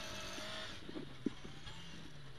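Ford Escort RS2000 rally car's four-cylinder engine heard from inside the cabin, running with a steady note whose revs drop about a second in, with a single sharp knock shortly after.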